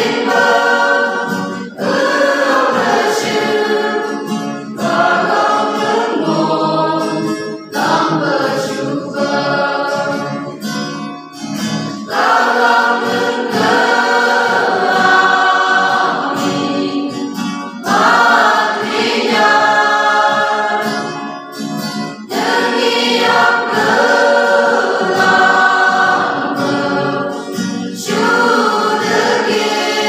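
Mixed youth choir of women and men singing a Christian song in the Phom language, in phrases of a few seconds with short breaks between them, accompanied by acoustic guitar.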